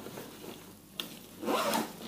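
The zipper of a nylon jacket being pulled open: a sharp click about halfway through, then a short zipping rasp near the end, the loudest sound here, with fabric rustling around it.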